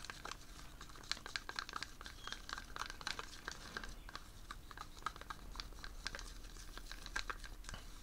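Wooden stick stirring thick acrylic paint, thinned with a squirt of water, in a plastic cup: faint, irregular little clicks and scrapes as the stick works the paint against the cup.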